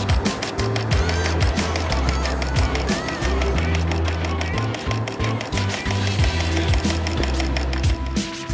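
Background music with a steady beat and a deep bass line that moves in steps.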